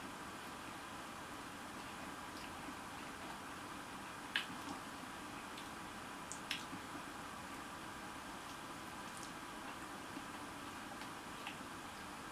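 Faint mouth sounds of a man eating a McRib sandwich: a few short wet smacks and clicks, the sharpest about four seconds in and again about six and a half seconds in, over a steady low hiss.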